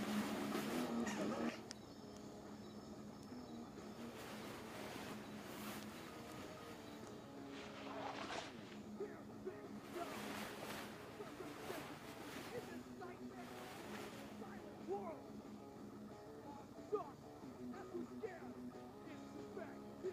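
Quiet background film music of sustained low tones, with a few short gliding notes over it.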